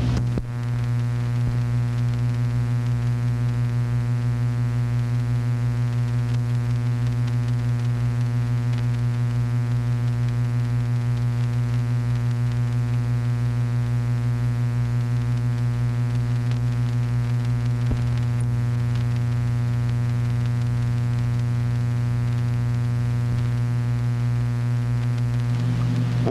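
A steady, unchanging low electrical hum with a stack of even overtones, as loud as the narration around it.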